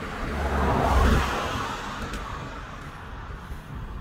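A car passing by, its tyre and engine noise swelling to its loudest about a second in and then fading away.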